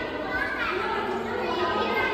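Indistinct background chatter of visitors, with children's high voices, in a large hall.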